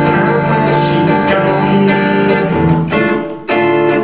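Acoustic guitar strummed in a steady rhythm as song accompaniment, with a man's sung word held over it at the start.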